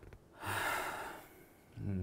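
A man's audible breath in through the mouth, a short gasp-like inhale of under a second, taken in a pause before he speaks again.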